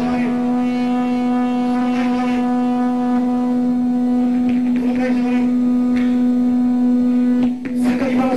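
A steady amplified drone: one low note held dead level through a PA, cutting off suddenly about seven and a half seconds in. A man's voice shouts briefly into a microphone over it, about two and five seconds in.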